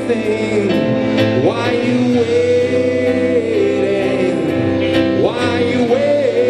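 Live band playing a song with electric guitars, keyboard and drums, with singing. The melody holds long notes and twice slides up in pitch, about a second and a half in and again near the end.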